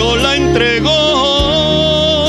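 Worship song: a solo voice sings a melody over sustained instrumental accompaniment, moving through short phrases and then holding a long note with vibrato from about halfway in.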